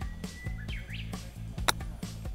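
A golf club striking the ball on a short approach chip: one sharp click near the end. Steady background music runs underneath, with a bird chirping in the first second.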